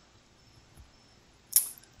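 Near silence, then a sharp computer mouse click about one and a half seconds in, followed shortly by a second, softer click.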